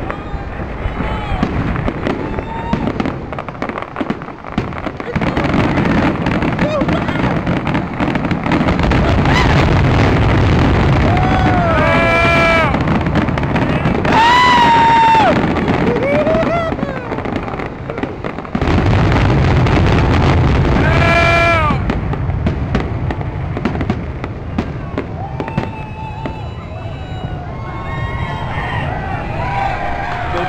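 Fireworks display: a dense barrage of aerial shells bursting and crackling. It builds about five seconds in, stays loud until a little past the middle, then thins out near the end.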